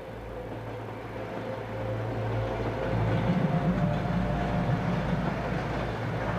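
A train running, a steady rumble with a low hum that grows louder about halfway through.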